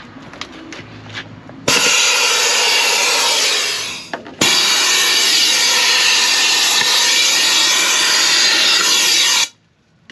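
Compressed-air venturi vacuum gun running off the truck's air system, a loud steady rushing hiss as it sucks debris off the cab floor. It runs for about two seconds and trails off, then is triggered again for about five seconds and cuts off suddenly.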